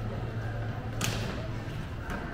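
Shopping-corridor ambience: murmur of shoppers' voices over a steady low hum, with one short, sharp swish about a second in.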